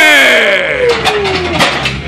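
A man's long drawn-out shout, sliding steadily down in pitch, carrying on from a cry of "oh man" after a heavy bench press. Near the end come a few sharp metal clanks as the loaded barbell is handled back toward the rack.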